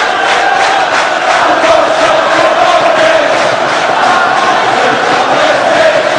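A group of footballers chanting together in unison in a victory celebration, many men's voices held on one slowly wavering note.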